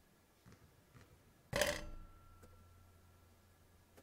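A basketball free throw striking the metal rim of the basket: one sharp clang about a second and a half in that rings on briefly, followed by a faint bounce of the ball on the hardwood floor.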